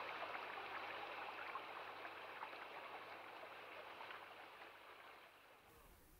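Faint flowing-stream water sound effect that fades out gradually, dying away to near silence near the end.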